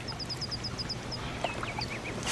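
A bird singing: a rapid run of about ten short, high, falling notes lasting about a second, then a few lower chirps.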